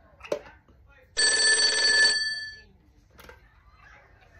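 Corded landline telephone ringing once, a single ring of about a second that starts just over a second in.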